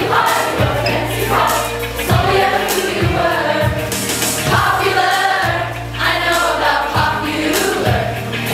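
A group of teenagers singing a pop song together over a backing track with a steady bass line and a drum beat.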